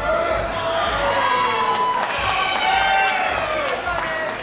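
Audience shouting and cheering for posing bodybuilders: several voices call out at once in long, drawn-out shouts that rise and fall, with a few sharp clicks.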